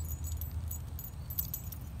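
Dalmatian puppy's collar tags jingling in quick irregular bursts as it trots in on recall, over a low steady rumble.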